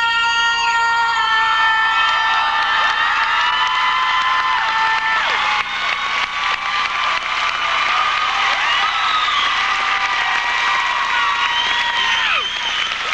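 Concert audience cheering, whistling and whooping as the song's last note is held, then loud applause with whistles once the note stops about five and a half seconds in.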